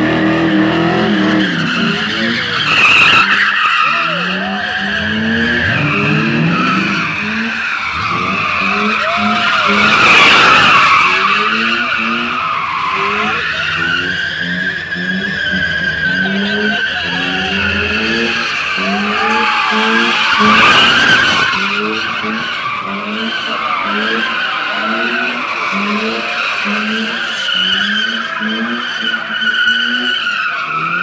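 A car doing donuts: its tyres squeal without a break as they slide, and the squeal wavers in pitch and swells louder a few times. Under it the engine revs up and drops back over and over, about once a second.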